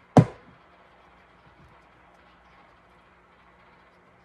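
A single sharp knock of a hard object striking a hard surface, loud and short with a brief ring-out.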